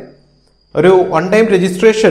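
A man speaking after a short pause of under a second, with a faint steady high-pitched tone running underneath throughout.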